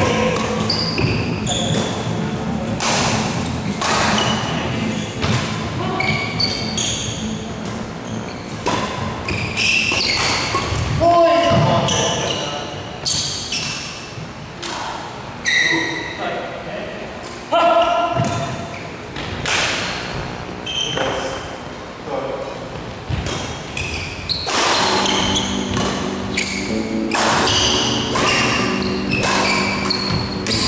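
Doubles badminton play echoing in a large indoor hall: repeated sharp racket strikes on the shuttlecock and footfalls on the court, with players' voices calling out between shots.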